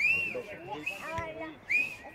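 Two short, high whistles, one at the very start and a louder one near the end, each rising and then falling in pitch, with faint voices from the sideline between them.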